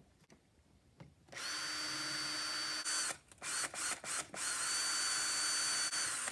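Cordless drill running: a steady whine for about two seconds, then a quick string of short trigger bursts, then another steady run near the end.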